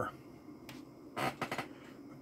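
A faint click, then a short cluster of clicks about a second and a half in: hands handling the test gear on the bench.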